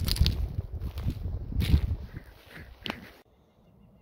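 Low rumble of wind and handling noise on a handheld camera's microphone, with a few short crunches like footsteps on dry forest ground. It cuts off abruptly a little after three seconds in.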